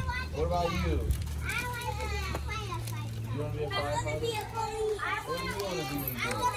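A group of young children chattering and calling out together, many small voices overlapping, with a low steady hum underneath.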